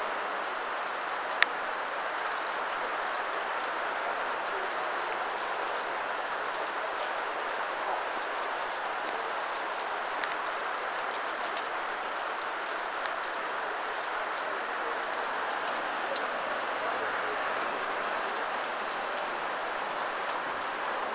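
Heavy rain falling steadily, a continuous even hiss of rain on the ground and foliage. A single sharp click about a second and a half in.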